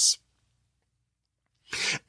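A man's sharp intake of breath through the mouth before he speaks again, near the end, after about a second and a half of silence.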